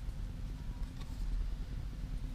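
Steady low hum of room noise, with a faint tick about a second in.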